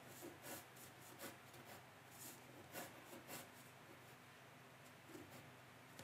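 Faint pencil strokes scratching on watercolour paper, a handful of short strokes over a low steady hum.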